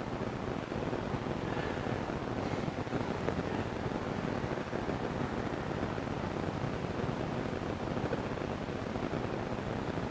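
Steady rushing noise, most like wind, with no distinct strokes or events.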